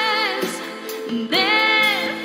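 A song with a voice singing long notes that waver in pitch over a musical accompaniment, easing off in the middle before a new held note begins about two-thirds of the way in.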